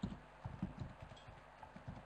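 Faint, dull keystrokes on a computer keyboard, about eight taps at an uneven pace, as an email address is typed in.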